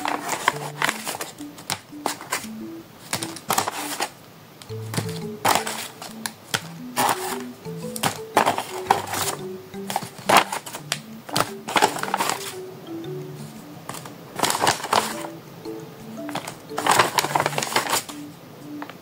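Paper blind bags crinkling and rustling in repeated bursts as they are pulled out of a larger paper bag and laid down, over light background music of short, separate low notes.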